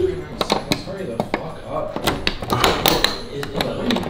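Casement window crank operator being turned to swing the sash open, a run of sharp clicks from the handle and gear.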